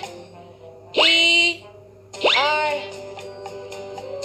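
Two cartoon-style sound effects, each a quick upward pitch sweep that settles into a ringing tone, about a second and two seconds in, over soft sustained background music. They are TV-edit effects marking letters popping up on screen.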